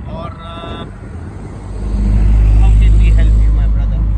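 A motor vehicle passing close by: a low engine hum that swells up about two seconds in, becoming the loudest sound, and eases off toward the end.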